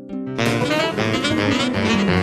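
Instrumental cartoon music: a few plucked string notes fade out, then about half a second in a full, jazzy band comes in, louder.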